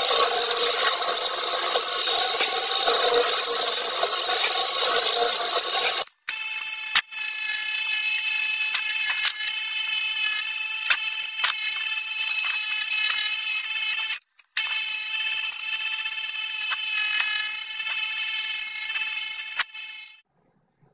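Drill press boring into a wooden block: a dense, noisy grinding whir. After abrupt cuts at about 6 and 14 seconds, a power tool's motor runs with a steady high whine and scattered clicks as the wood is cut.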